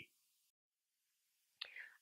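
Near silence at an edit, with a brief faint breath near the end.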